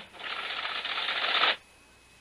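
Radio-drama sound effect of a computer-driven typewriter printing out: a fast, even mechanical clatter that stops abruptly about a second and a half in.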